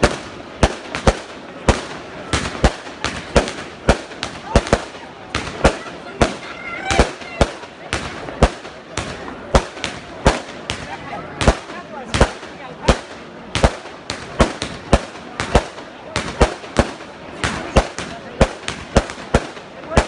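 A long string of firecrackers going off, sharp bangs following one another at about two to three a second.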